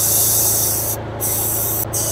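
Air hissing out of the R134a charging hose as its fitting at the AC manifold gauge set is cracked open to bleed it: a long burst, a brief break about a second in, then two shorter bursts. The Pontiac Fiero's engine idles steadily underneath.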